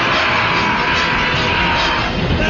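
Loud orchestral film score over the engine noise of vehicles in a high-speed chase, with a held high note.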